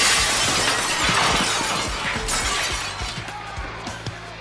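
Bar glassware and bottles shattering: a sudden loud crash of breaking glass at the start that goes on for about two seconds before dying away.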